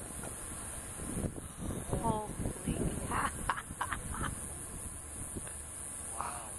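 Indistinct voices talking quietly, with a low rumble and a steady high hiss underneath.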